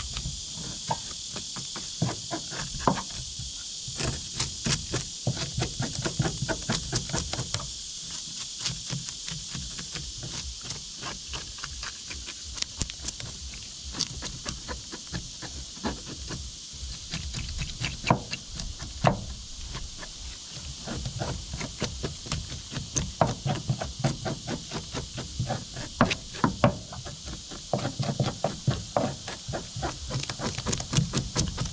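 A knife blade scraping scales off a bluegill on a plastic cutting board, in quick irregular strokes. A steady chorus of insects runs underneath.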